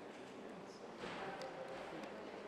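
Indistinct, faraway voices over a low room murmur, becoming a little louder about a second in.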